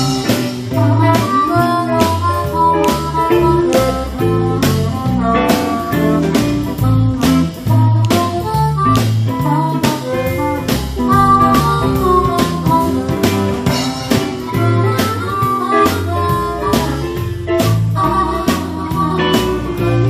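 Live band playing an instrumental break in a swing-blues style: a drum kit keeping a steady beat of about two strokes a second, bass notes moving underneath, and an electric guitar carrying the melody line.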